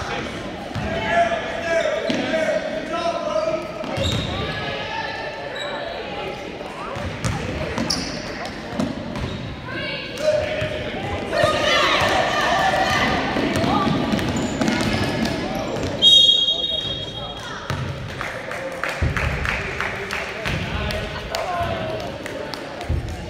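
Basketball dribbled and bouncing on a hardwood gym floor, under indistinct shouting from spectators and players that grows louder for a few seconds midway. A referee's whistle blows briefly about three-quarters of the way in.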